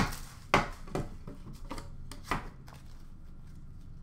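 A few sharp knocks and clatters, four or five in the first half, from a metal card tin being handled and set down on a glass counter.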